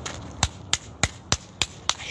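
Six sharp, evenly spaced knocks, about three a second.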